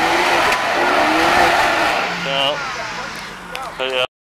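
Jeep Wrangler engine revving hard under load as the tyres churn mud and it pulls up out of a rut, then easing off after about two seconds. Short bursts of voices come in near the end.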